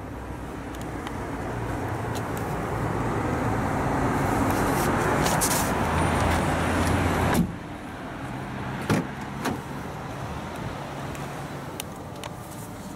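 Outdoor traffic and street noise builds over several seconds, then a car door on the Vauxhall Astra shuts about seven seconds in and the sound drops to the quieter hush of the closed cabin. A couple of light knocks follow inside the car.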